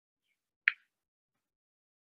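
A single short, sharp click about two-thirds of a second in, with dead silence around it.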